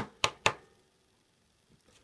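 Pokémon trading cards flicked one behind another in the hand: three short, sharp card snaps within the first half second.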